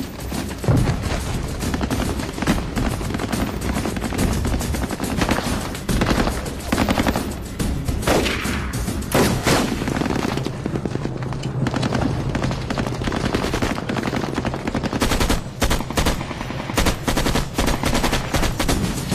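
Film battle-scene gunfire: sustained rapid machine-gun and rifle fire, shots crowding one on another without a break, with background music underneath.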